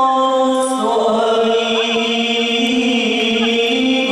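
Voices chanting a devotional song in long held notes, moving to a new pitch about a second in, with a brief wavering ornament; no drumming is heard.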